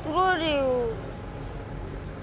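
A young boy's voice saying one short phrase in Burmese, falling in pitch over about a second, then a pause with only faint background noise.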